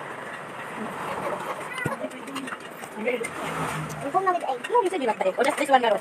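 People's voices over a steady background noise, with one voice becoming clear and close from about four seconds in.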